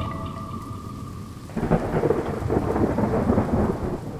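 The last held guitar note dies away, then about one and a half seconds in a rumble of thunder with rain comes in, loud and uneven.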